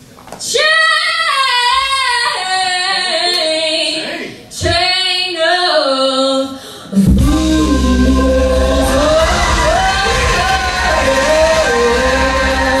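A woman singing solo, unaccompanied, in two long phrases with a short break about four seconds in. About seven seconds in a live band with drums comes in beneath her and she keeps singing over it.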